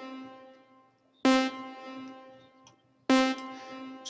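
A synth stab sample played in FL Studio through a side-chained reverb: the same single pitched note is struck twice, nearly two seconds apart. Each hit starts sharply and fades out into a reverb tail that comes in delayed behind it.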